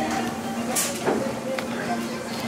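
Fast-food restaurant dining-room ambience: indistinct background voices over a steady low hum, with a brief rustle and a knock about a second in.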